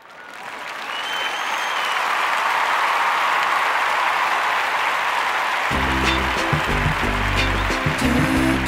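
Audience applause that swells up over the first couple of seconds and then holds steady. Music with low bass notes comes in underneath about six seconds in.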